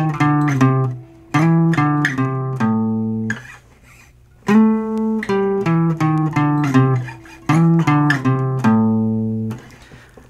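Washburn parlor acoustic guitar playing a single-note blues lick twice. The notes step down the D and A strings with slides between frets, and each run ends on a held low note at the fifth fret of the low E string.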